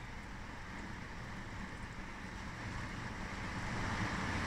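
Faint, steady low background rumble that slowly grows a little louder, with no distinct clicks, knocks or voices.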